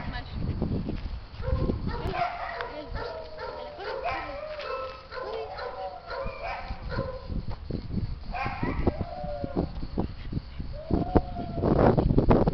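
A dog vocalizing in short pitched sounds, mixed with a person's voice, and low bumps of handling or wind on the microphone that grow stronger near the end.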